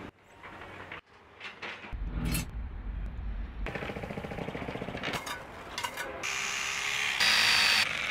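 Construction-site sounds in quick succession: a mini-excavator's engine rumbling as its bucket digs sand, then a run of sharp knocks and clinks from concrete blocks being handled, and a loud, steady hissing noise near the end.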